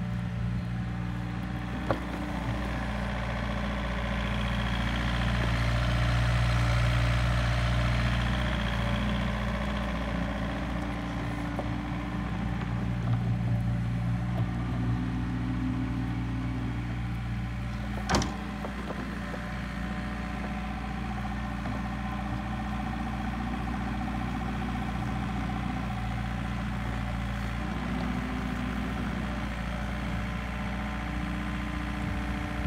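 Takeuchi TB153FR mini excavator's diesel engine running steadily, the note rising and falling as the machine tracks and works its boom and bucket. A sharp knock stands out about 18 seconds in, with a smaller one about 2 seconds in.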